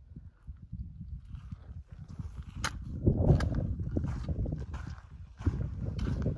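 Footsteps of a hiker on a rocky dirt trail, a scuff or crunch roughly once a second, over a low rumble of wind on the microphone.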